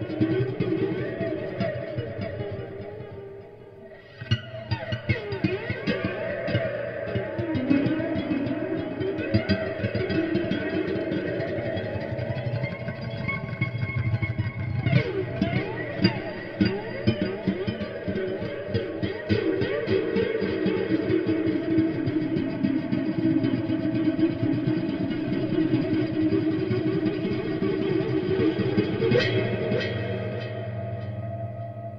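Microtonal slide guitar played through heavy reverb: plucked notes with pitches gliding up and down between them. The playing thins out and drops in level briefly about four seconds in, then carries on densely.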